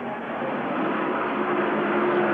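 NASCAR Winston Cup stock cars' V8 engines running flat out on track, a steady drone that grows slightly louder.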